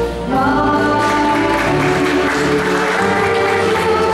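Middle school jazz band playing, with a singer's voice over sustained chords from the band. The sound dips briefly just after the start, then the full band carries on.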